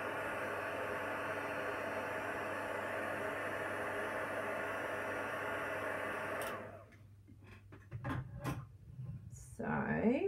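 Handheld craft heat tool blowing steadily to dry water-based shimmer ink on vellum, then switched off about six and a half seconds in. A few light taps and paper-handling sounds follow.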